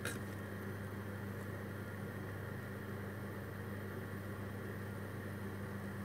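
A large pot of water at a rolling boil, a steady bubbling hiss over a constant low hum, with a brief click of a slotted spoon against the pot at the start.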